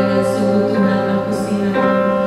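An Indonesian worship song, sung by women's voices into microphones over instrumental backing, with long held notes.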